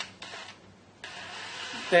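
Cordless drill starting about a second in and running steadily, turning the feed shaft and gear train of a Harrison M300 lathe apron.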